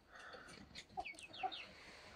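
Chickens on a roost making faint, soft clucking sounds, with a few short falling chirps about a second in.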